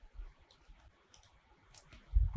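A few faint computer mouse clicks against near silence.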